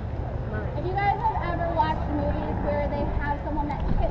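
A woman talking, over a steady low rumble.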